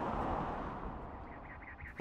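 Outdoor background noise: a steady hiss that fades away over the two seconds, with faint high chirps near the end.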